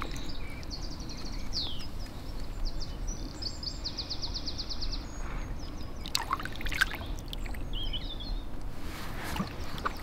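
Lake water splashing and sloshing as a big common carp is released by hand and kicks away with its tail, the loudest splashes coming a little past halfway and again near the end. Small birds chirp and trill in the first half.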